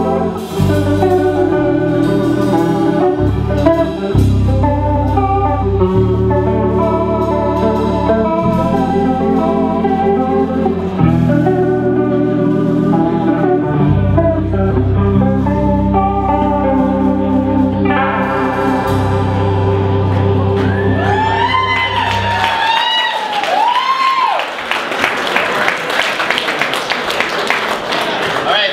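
Live instrumental rock trio playing: electric guitar, electric bass and drum kit, with long sustained guitar notes over a heavy bass line. About three-quarters of the way through the bass drops out, the guitar bends notes up and down, and the music breaks into a loud, noisy wash as the song ends.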